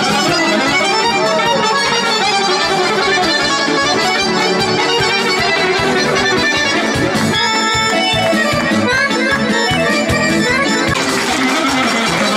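Live band music led by accordion, playing a lively traditional dance tune over a steady beat.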